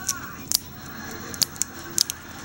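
Close handling noise: a few short, sharp clicks, about four or five spread over two seconds.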